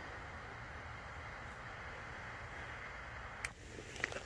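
Butane lighter flame held to a pile of magnesium flakes, hissing steadily, then cut off suddenly with a click about three and a half seconds in as the flakes catch. A few faint crackles follow.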